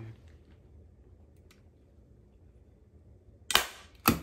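A hand-squeezed staple gun fires once, a single sharp snap about three and a half seconds in, driving a staple through upholstery fabric into a chair seat. Before it there is only faint room tone.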